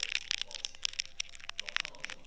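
An ear-cleaning tool working inside the ear canal, close-miked: rapid, irregular crackling and scratching clicks as it scrapes at earwax and hairs.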